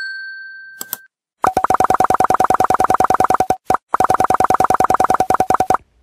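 Subscribe-button sound effects: a short fading chime at the start and a click just before a second in, then a loud ringing-bell effect for the notification bell, a rapid even-pitched pulsing that runs for about four seconds with one brief break in the middle.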